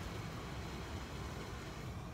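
Steady outdoor background noise, a low rumble with an even hiss, with no distinct event.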